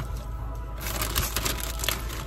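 Crunchy jalapeño ranch potato chips being chewed: a quick run of crisp crunches starting about a second in.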